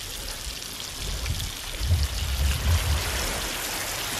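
Kahawai fillets sizzling steadily in melted butter in a pan over charcoal, with a low rumble swelling in and out around the middle.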